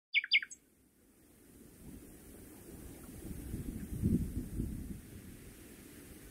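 Two quick, loud bird chirps, each falling in pitch, right at the start, followed by a low rumble that swells to a peak about four seconds in and then eases off.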